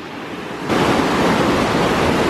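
River rapids: white water rushing over rocks in a steady wash of noise that gets louder a little under a second in.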